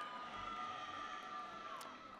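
A long, high, held whoop of cheering from the audience, one steady pitch that dips away near the end.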